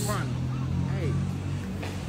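A pickup truck's engine idling with a steady low hum, after a man's short 'Hey' at the start.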